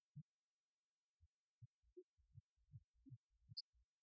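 Near silence, with faint, irregular low thumps scattered through it and a steady faint high hiss.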